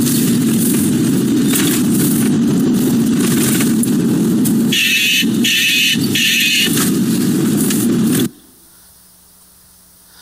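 Car cabin noise from a dashboard-camera recording of a car driving through a tunnel: a steady low road and engine rumble, with three short higher-pitched sounds about five to seven seconds in. It cuts off suddenly a little after eight seconds, leaving a faint low hum.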